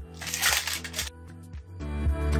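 Clear plastic packaging crinkling for about a second as the melting band is pulled from its wrapper, over background music.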